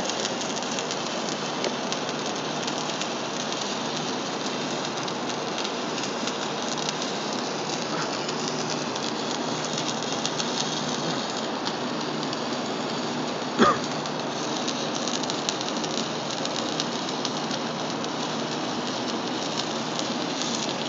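Stick (arc) welding: the electrode's arc crackles and sizzles steadily and unbroken as the rod burns down. A brief sharp knock or pop cuts in about two-thirds of the way through.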